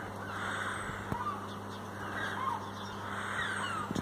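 A few faint bird calls over a steady low hum of outdoor background noise.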